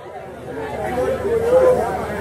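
People talking: softer speech and chatter from a seated crowd, between louder stretches of a man speaking.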